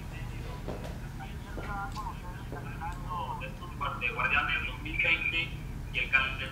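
A voice speaking over a video call, thin and tinny as through a phone line, growing louder about two-thirds of the way in, over a steady low hum.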